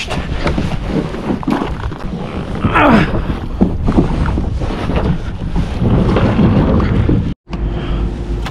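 Plastic sit-on-top kayak being launched off a shingle beach: the hull scrapes and knocks over the pebbles into the water, with water sloshing and wind buffeting the microphone. A short vocal sound about three seconds in, and the sound cuts out for a moment near the end.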